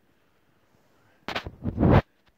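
Near silence, then just past halfway a few loud bursts of low noise striking the microphone, loudest at the very end.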